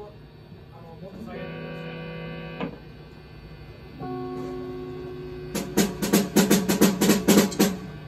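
Instruments being tried between songs: a held note rings for about a second and a half, a second held note follows, then a quick run of about eight drum hits on a drum kit near the end, the loudest part.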